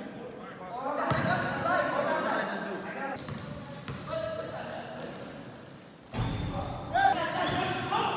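Players' voices calling out in an echoing gym, with a basketball bouncing on the court floor. The sound changes abruptly twice where clips are cut together.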